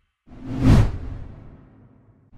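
A single whoosh transition sound effect with a heavy low end. It swells in after a brief silence, peaks just under a second in, then fades away.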